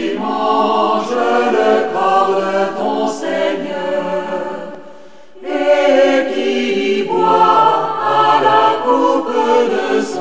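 A choir singing a sacred song in phrases; the singing falls away briefly about halfway through, then the next phrase comes in.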